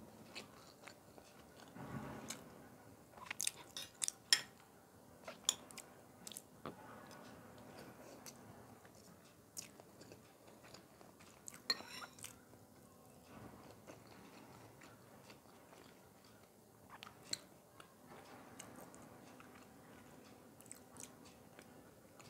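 Chewing and mouth sounds of someone eating rice pilaf and white bean stew, picked up close by a clip-on microphone, with scattered sharp clicks of a metal spoon against the dishes.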